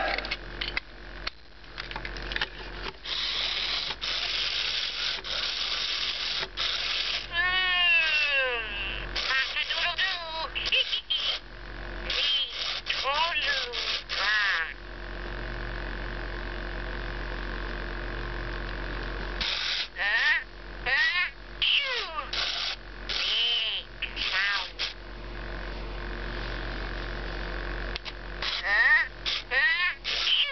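A 1998 Tiger Electronics Furby waking up and talking in its high, warbling electronic voice: chirps and sliding up-and-down syllables in bursts. Between the bursts are clicks and a steady whir from its internal motor as its eyes, ears and mouth move.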